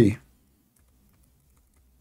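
The end of a man's spoken phrase, then near silence with faint, scattered computer keyboard clicks.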